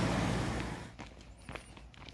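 Footsteps on a paved footpath, a few steps about half a second apart. They follow a steady rushing noise that fades out during the first second.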